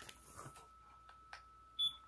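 Fabric and a hot glue gun handled on a tabletop: soft rustling and a few light clicks, then one short, high electronic beep near the end.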